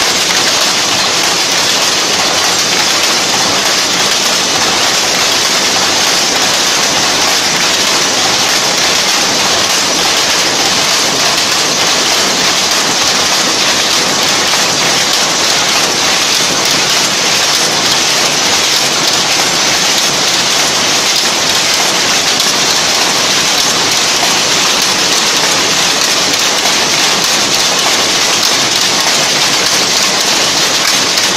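Power looms running: a loud, steady, dense mechanical clatter of weaving machinery, with no break or change.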